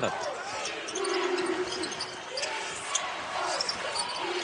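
Arena court sound from a live basketball game: a basketball being dribbled on the hardwood under the murmur of the crowd. About a second in, a steady held tone sounds briefly over it.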